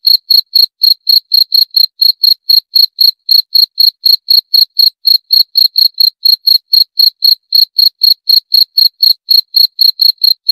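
A cricket chirping loudly and steadily, a rapid even train of short high-pitched chirps at about five a second.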